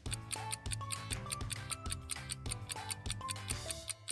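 Countdown timer music: fast, evenly spaced ticking over a low bass line and short melodic notes.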